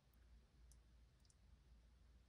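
Near silence with a low hum, broken by about three faint, short, high clicks of a metal fork touching a spoon as noodles in cream sauce are twirled.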